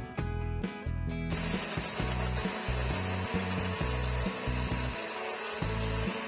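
Countertop blender switching on about a second in and running steadily, crushing ice cubes with cream and instant coffee, over background guitar music.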